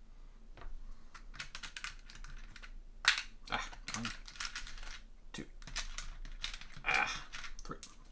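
Small wooden game pieces clicking and rattling as a hand picks through a plastic component tray: a run of light, irregular clicks with a few louder clacks.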